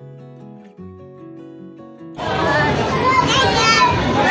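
Soft background music of held, changing notes, cut off about two seconds in by loud live ride sound: a small child laughing and shrieking amid voices and crowd chatter.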